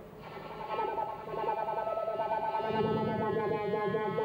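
Violin bowed through a gesture-sensing effects processor: sustained notes with a wavering pitch, layered with electronic effects. A lower tone joins near the end.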